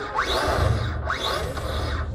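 Brammo Empulse electric motorcycle's motor whining up in short rising blips, twice about a second apart, as the throttle is twisted.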